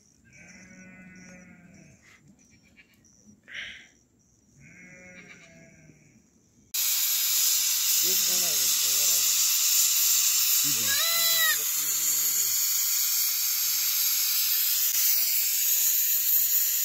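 Sheep bleating a few times. About a third of the way in, a loud steady hiss starts abruptly: steam venting from an aluminium pressure cooker on a wood fire, with the sheep still bleating over it.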